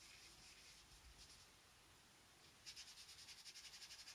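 Faint scratching of a small synthetic brush stroking acrylic paint onto paper. It turns into a quicker, slightly louder run of short dabbing strokes near the end.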